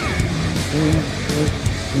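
Mitsubishi Pajero rally car's engine driving hard over loose sand, its high note dropping sharply at the very start, under background music with held low notes.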